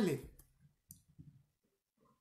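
A man's voice trailing off at the end of a phrase, then a near-quiet pause holding a few faint small clicks about a second in.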